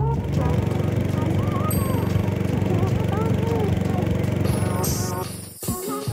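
Small boat's engine running steadily with a fast, even pulse, heard from aboard on the water. It cuts off suddenly near the end.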